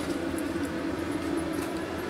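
Motorhome furnace blower running with the heat on, a steady hum with a faint flat tone.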